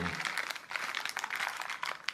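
Clear plastic bag of crocodile-clip test leads crinkling as it is handled, with many short crackles throughout.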